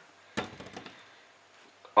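A whole mushroom is dropped into a frying pan of melted butter and lands with a single knock about a third of a second in.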